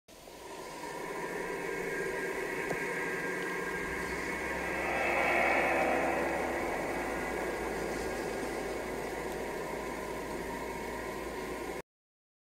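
Steady static-like hiss that fades in, swells about halfway through, and cuts off suddenly just before the end.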